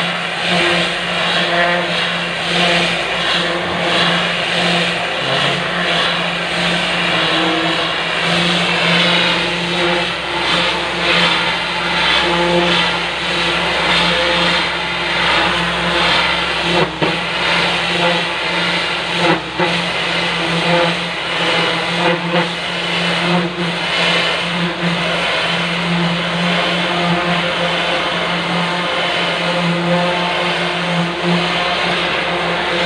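High-pressure washer running without a break: a steady motor hum under the hiss of the water jet spraying against a ship's hull, with a couple of brief knocks about two-thirds of the way in.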